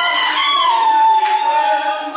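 A long high-pitched cry from a voice in the crowd, rising briefly and then holding a steady note for about a second, over crowd noise and singing.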